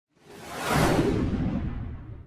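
Whoosh sound effect from a logo intro, with a low rumble beneath it. It swells up over the first second, then fades away, its hiss thinning out first while the rumble lingers.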